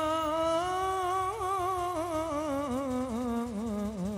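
A man's solo voice singing an Islamic devotional song into a microphone, unaccompanied: a long held note that breaks into quick, wavering ornaments after about a second, the melody slowly sinking lower toward the end.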